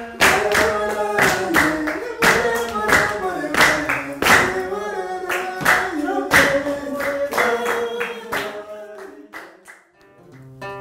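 Singing with steady handclaps keeping the beat, a traditional Rwandan dance song; it fades out near the end.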